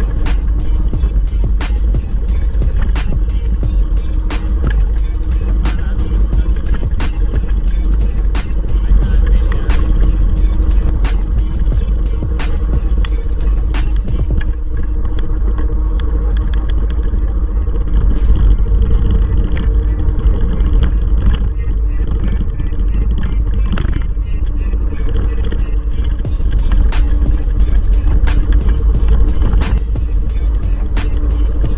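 Heavy, steady low rumble of wind and road vibration from an electric kick scooter rolling along a concrete road, with sharp knocks recurring throughout. Music plays over it.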